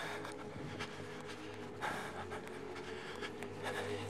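A person walking fast on a dirt road and breathing hard, with one short louder rustle about two seconds in, over a steady low droning tone.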